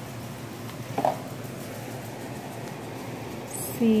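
A single light knock about a second in, from objects being handled and set down on a countertop, over a steady background hum.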